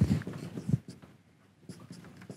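Marker pen writing on a whiteboard in short strokes, with a brief pause just past the middle.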